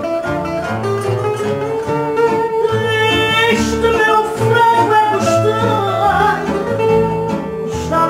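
A woman singing fado, holding long notes, over plucked guitar accompaniment.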